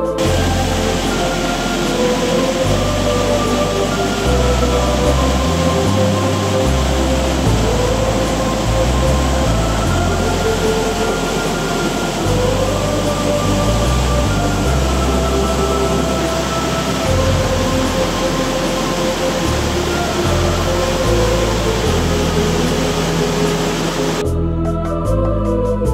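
Steady rush of falling water under background music with held tones and slowly changing bass notes; the water sound cuts in and out abruptly at the edges.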